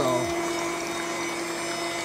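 Electric pump of a small reverse-osmosis rig running with a steady hum, with liquid moving through it, as it concentrates maple sap.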